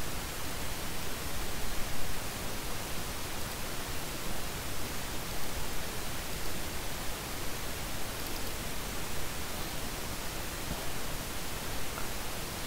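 Steady hiss of the recording's background noise, with no other sound standing out.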